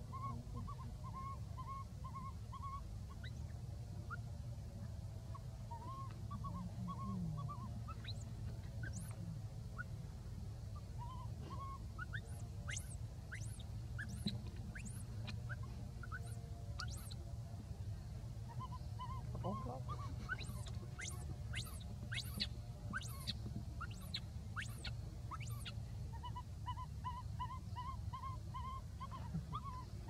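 Runs of short, repeated hoot-like animal calls that come and go, with quick high chirps scattered through the second half.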